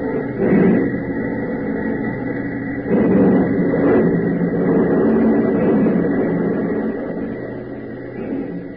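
Radio-drama sound effect of a car factory assembly line: a dense, continuous mechanical din of running machinery, heard through a narrow old broadcast recording. It swells about three seconds in and fades toward the end.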